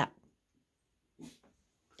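Mostly quiet, with one brief, faint sound from a small dog about a second in as it worries a torn-open stuffed toy.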